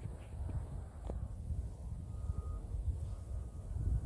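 Quiet outdoor ambience: a steady low rumble with a faint high hiss, and a faint click about a second in.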